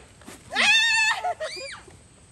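A person's high-pitched shriek with a wavering pitch, lasting about half a second, followed by a shorter falling cry.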